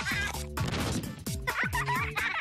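Cartoon characters laughing in quick, high, warbling bursts over a jingle-style music track. Falling pitch swoops repeat under the laughter.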